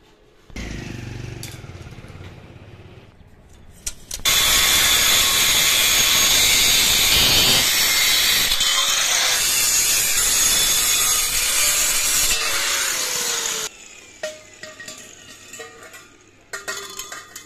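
Angle grinder with a thin cut-off disc cutting through a stainless steel railing tube: a loud, steady grinding screech for about nine seconds that stops suddenly, followed by a few light clinks of metal tubes being handled.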